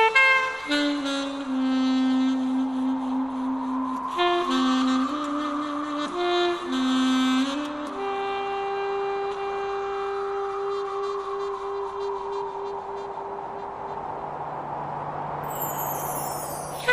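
A saxophone-like wind instrument playing a slow funeral melody, shorter notes at first, then one long held note in the second half.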